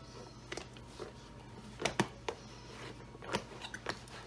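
Red rubber gloves being pulled onto the hands: faint rubbing with half a dozen short clicks and snaps, the sharpest about two seconds in.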